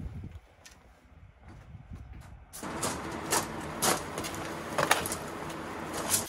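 Footsteps on a gravel floor: an even crunching hiss with a few sharper steps standing out about a second apart, after a quiet first couple of seconds.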